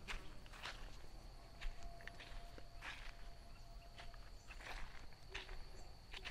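Footsteps on a dry dirt footpath at an even walking pace, about a step and a half a second, faint.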